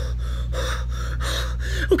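A man's quick, breathy gasps and puffs of breath, about five a second, in excited reaction. A steady low electrical hum runs underneath.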